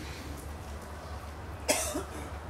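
A man coughs once, short and sudden, near the end, over a steady low hum from the hall's sound system.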